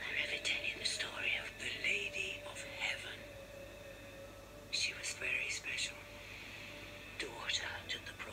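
Whispered voices from a film trailer's soundtrack, in phrases of a second or two with pauses between, over a faint steady drone tone.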